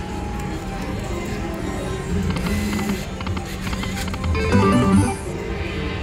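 Aristocrat Dragon Cash Golden Century video slot machine playing its spin music and reel-stop sounds as a spin runs and pays a small win, with a louder run of notes about four and a half seconds in.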